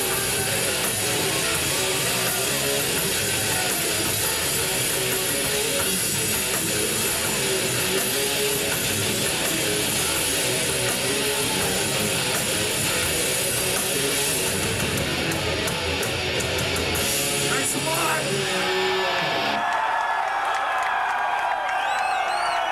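Heavy metal band playing live with distorted electric guitars, bass, drums and vocals, heard through a camcorder microphone in the crowd. The music thins out after about 15 s and the low end drops away near the end, leaving ringing, gliding tones and whistles over crowd noise.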